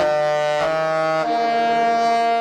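Disney Cruise Line ship's musical horn playing a tune in loud held chords. The pitch steps about half a second in and again a little past a second, then the last chord is held.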